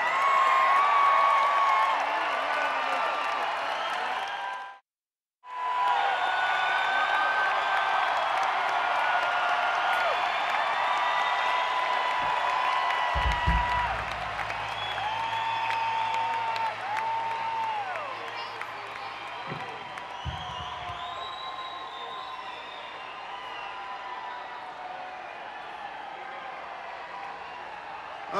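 Large arena crowd cheering, whoops and whistles between songs, slowly dying down. The audio drops out completely for about half a second about five seconds in.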